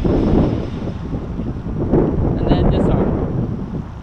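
Strong wind buffeting the microphone in gusts, a heavy rumble.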